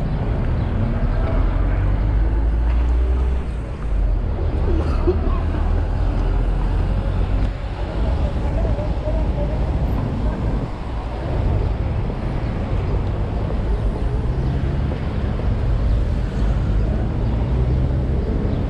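Busy city street: continuous road traffic with a heavy low rumble, and the scattered voices of people nearby.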